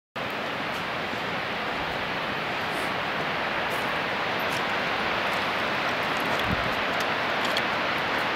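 Steady rushing hiss of Upper Whitewater Falls, a distant waterfall heard across the gorge, even and unchanging throughout.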